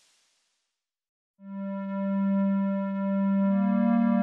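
Background music: after about a second of silence, a sustained electronic keyboard tone comes in, and a second, higher note joins it near the end.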